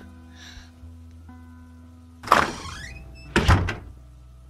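Sound effect of a door swinging open and then shutting with a thud about three and a half seconds in, over quiet background music.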